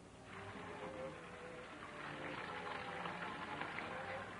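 Electrical crackling and buzzing from a live wire, a steady hissing buzz that swells slightly over the few seconds: someone is taking a shock from an electrified wall.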